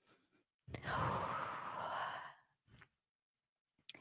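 A woman's long, slow sigh out close to the microphone, lasting about a second and a half.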